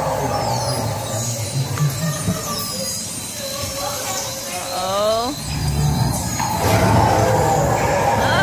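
Roller coaster train rolling along its track through an enclosed dark-ride section, with a steady low rumble under the ride's soundtrack of music and effects. High falling whistles repeat through the first few seconds, a rising wail comes about five seconds in, and the rumble grows louder near the end.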